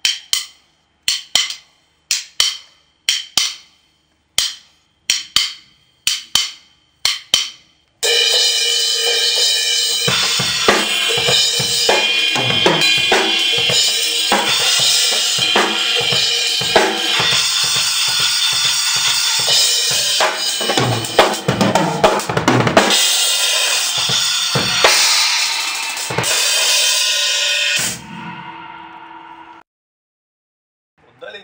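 Drum kit cymbal struck in quick pairs, about one pair a second, each hit ringing briefly: a stroke up into the cymbal from below followed at once by one from above. About eight seconds in, the full kit comes in loud, with bass drum, snare and ringing cymbals, and stops about two seconds before the end, leaving a short fading ring.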